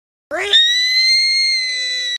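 A young boy's long, high-pitched scream. It starts about a third of a second in, sweeps up sharply, and is then held at one shrill pitch.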